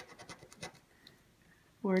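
A round coin-shaped scraper rubbing the silver latex coating off a scratch-off lottery ticket: a quick run of short, dry scrapes in the first second, then a pause.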